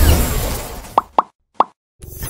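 Animated logo sound effects: a noisy wash that fades away, then three quick cartoon bubble plops about a second in, the third a little after the first two.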